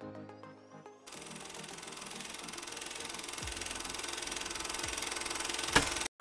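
Intro music with held tones, then about a second in a hissing, rapidly rattling sound effect that swells steadily louder for about five seconds and cuts off suddenly.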